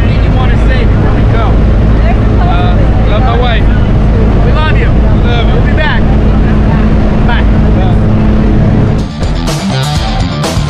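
Steady drone of a jump plane's engine and propeller inside the cabin, with voices talking over it. About nine seconds in the drone cuts off and rock guitar music begins.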